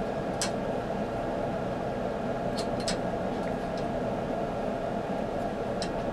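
Steady hum of room noise, with a few short clicks as strips of header pins are pushed into an Arduino's socket headers.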